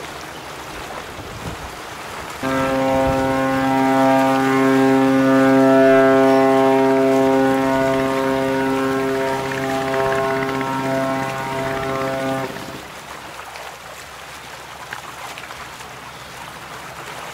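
Ship's horn sounding one long, steady blast of about ten seconds, starting abruptly and cutting off, over the wash of water and wind.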